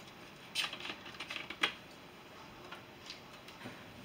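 Plastic soda bottle being handled, making a quick run of light clicks and taps for about a second, then a couple of faint ticks.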